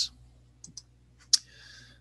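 A quiet pause holding a few faint ticks, then one sharp click about a second and a third in: a computer mouse click advancing a presentation slide.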